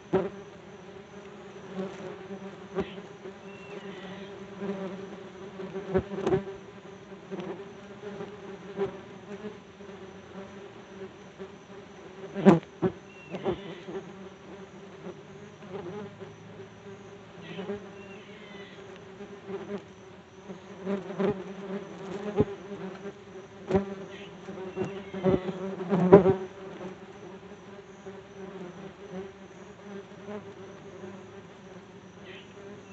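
Yellow jackets buzzing steadily around and against a phone lying on the ground, with the hum rising and falling as individual wasps pass close, and occasional sharp taps.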